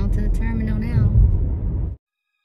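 Steady low road and engine rumble inside a moving car's cabin, with an indistinct voice over it. The sound cuts off abruptly near the end.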